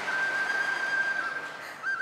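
A single high whistled note held steady for about a second, then a short wavering whistle near the end, over faint noise in the hall.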